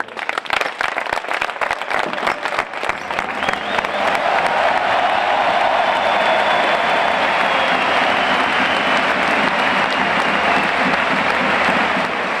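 Large arena crowd applauding: distinct close hand claps in the first few seconds, then a dense, steady wash of applause from the stands that builds up about four seconds in.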